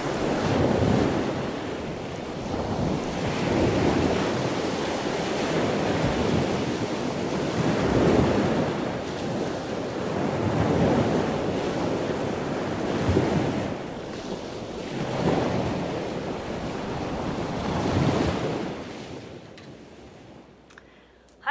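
Ocean surf: waves breaking and washing in, swelling and fading about every three seconds, then dying away near the end.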